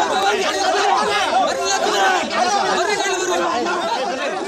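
A protesting crowd of men talking at once, many voices overlapping into a steady chatter.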